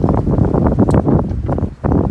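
A gust of wind buffeting the microphone: a loud, low rumbling blast that starts suddenly and cuts off shortly before the end.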